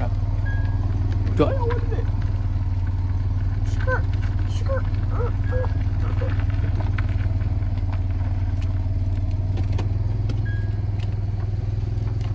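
Steady low rumble of a running car heard from inside its cabin, with faint, brief snatches of a voice in the first half.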